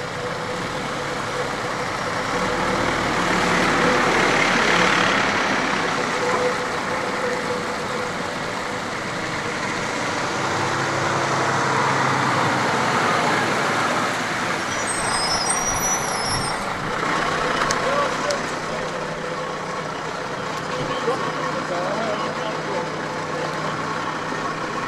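Heavy vehicle engines and machinery running steadily, with indistinct voices in the background; somewhat louder a few seconds in.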